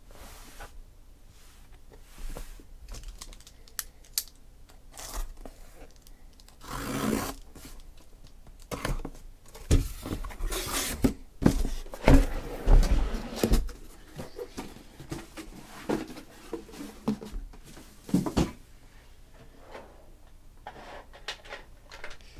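Sealed cardboard shipping case being opened by hand: packing tape cut and torn, cardboard flaps scraping and rustling, and irregular knocks as the boxes inside are lifted out.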